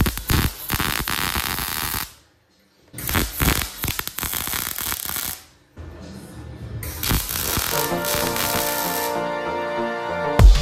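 MIG welding arc crackling in two bursts of a few seconds each, with a brief silence between, as a steel pipe guard is tack-welded. Electronic background music takes over in the second half.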